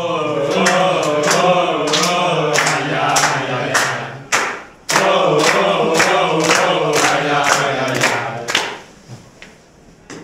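A group of men singing a chant-like song together, with sharp claps on the beat about three times a second. The singing comes in two phrases, with a short break a little after four seconds in, and fades near the end.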